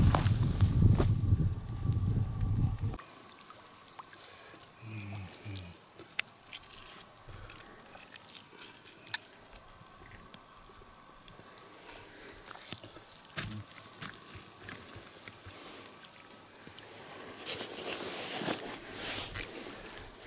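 Water dripping and sloshing as a fishing net is hauled out of a lake by hand and fish are pulled from the mesh, with small scattered clicks and ticks. A heavy low rumble in the first three seconds cuts off suddenly.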